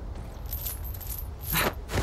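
Metal chain clinking and jangling in cartoon sound effects, with a louder, downward-sweeping swish about one and a half seconds in.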